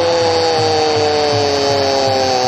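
A football commentator's long, drawn-out shout held on one slowly falling note, over the steady noise of a stadium crowd, as a goalmouth chance unfolds.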